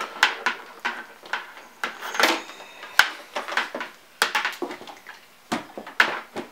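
Rubber bottom cover of a Technics 1200 turntable being handled and fitted onto the chassis, with the cords fed through its holes. It makes a series of irregular knocks, clicks and scrapes.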